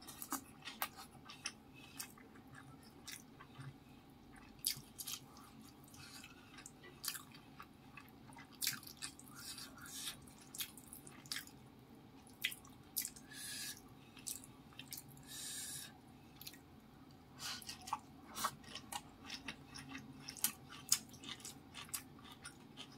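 Close-miked eating by hand: wet chewing and mouth clicks, many short sharp clicks in irregular succession, with two brief hissy sounds a little past the middle.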